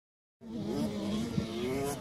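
KTM SX 85's 85 cc two-stroke single-cylinder motocross engine running off out of sight, holding a fairly steady pitch that wavers slightly. The sound starts just under half a second in.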